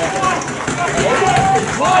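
Several voices shouting and calling over one another, the cheering as a goal has just been scored.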